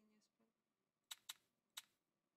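Three short, sharp clicks, two close together about a second in and one near the end, as three small chips are placed on an online roulette betting screen.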